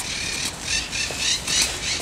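Birds squawking over and over in the open air, with a sharp click right at the start.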